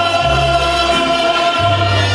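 A man singing a mariachi-style song into a microphone over musical accompaniment, holding one long note while the bass steps to a new note about every second and a half.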